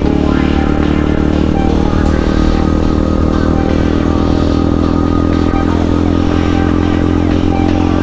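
KTM Duke 200's single-cylinder engine running steadily at cruising speed, under background music.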